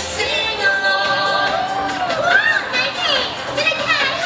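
Parade music with singing, mixed with the voices of a crowd of spectators.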